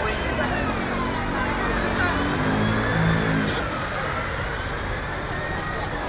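Busy city street traffic: a vehicle engine running close by, loudest a couple of seconds in, over the chatter of passers-by, with a high tone slowly rising and falling in pitch in the background.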